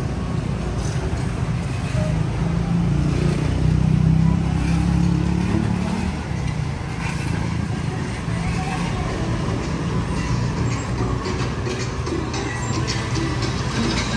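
Street traffic of cars and motorbikes: a steady low drone of engines and tyres, swelling for a few seconds about three seconds in.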